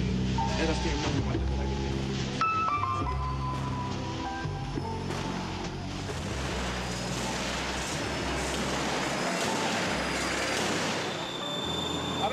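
Hip-hop mix music with no rapping: a bass-heavy instrumental passage with held notes for the first half, then the bass drops away under a building wash of noise, with a steady high tone near the end.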